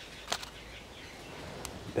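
Quiet outdoor background with a short sharp click about a third of a second in and a fainter tick near the end.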